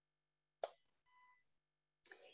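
Near silence, broken by one brief sharp click a little over half a second in.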